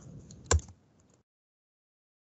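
Computer keyboard keystrokes: a few light key clicks, with one louder key strike about half a second in.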